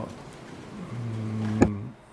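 A man's voice holding a low, drawn-out hesitation sound, a steady 'uhh' of about a second, with a sharp click just after it.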